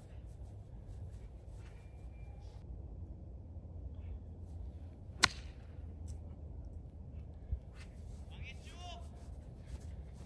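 A golf iron striking a ball cleanly from dry dormant grass: one short, sharp crack about five seconds in, over a low steady background rumble. A faint voice is heard near the end.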